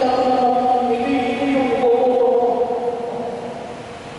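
A man singing or chanting long, held notes into a microphone, heard through the hall's loudspeakers; the phrase fades away in the last second.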